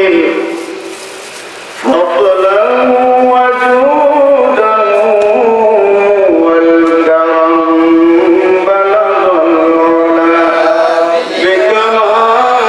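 A man's voice chanting a slow religious melody into a microphone, in long held notes that waver and slide. It drops away right at the start and comes back strongly about two seconds in.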